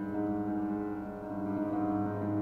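Piano playing slow, held chords, with a new chord coming in shortly after the start and another near the end.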